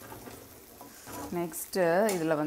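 Chicken and onions sizzling in a non-stick kadai while a steel spatula stirs and scrapes through them. A person's voice comes in about a second and a half in, louder than the frying.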